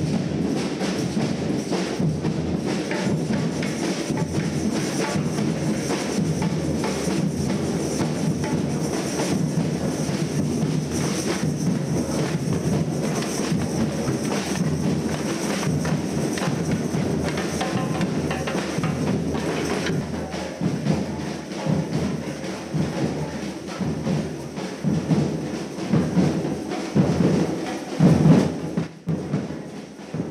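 Street-percussion drum group playing together: large wood-shelled bass drums struck with mallets, snare drums and tambourines in a dense, continuous rhythm. In the last third the separate drum strokes stand out more.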